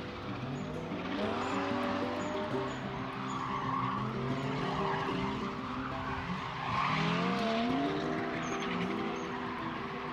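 A race car engine revving up through the gears again and again, its pitch climbing and dropping about once a second, over background music.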